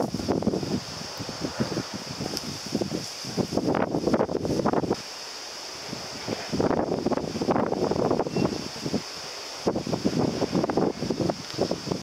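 Wind buffeting the microphone in irregular gusts, easing off briefly about halfway through and again near the end, over a steady high-pitched hiss.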